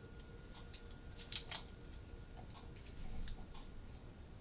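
Faint scattered clicks and light rustling from hands handling acupuncture needles and their wrappers, with a short cluster of louder clicks about a second and a half in.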